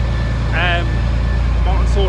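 Motorboat engine running steadily under way, a constant low drone with an even pulse. A man's voice speaks briefly over it, about half a second in and again near the end.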